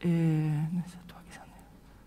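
A woman's drawn-out hesitation sound, a single held 'eeh' at a steady pitch lasting under a second. After it there is only faint room tone.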